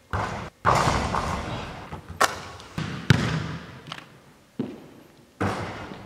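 Basketballs bouncing on a hardwood gym floor as shots are taken, several separate sharp impacts a second or so apart. Each impact echoes on in the large hall.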